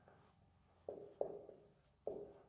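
Marker pen writing on a whiteboard: faint strokes, with two sharper ones close together about a second in.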